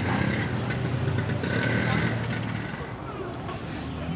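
Street traffic: a motor vehicle's engine running nearby, a steady low rumble that fades after about two and a half seconds, with faint voices of passers-by.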